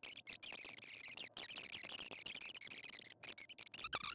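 Faint, steady high hiss of background noise with a few brief dropouts, and no speech.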